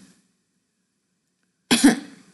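Dead silence for about a second and a half, then a single short, loud cough near the end.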